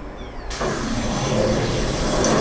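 Intro soundtrack played through the projector's speakers: the chime music has faded out, and about half a second in a loud rumbling noise starts suddenly and keeps going.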